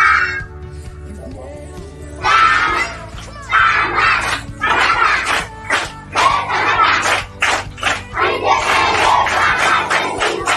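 A large group of children shouting and chanting together in repeated loud bursts, starting about two seconds in.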